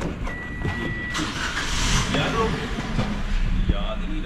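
A steady electronic beep lasting about a second, then a Toyota car's engine being cranked with the key to start.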